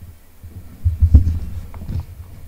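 Handling noise from the camera being picked up and moved: low thuds and rumbles on the microphone, loudest about a second in, with a couple of sharp clicks.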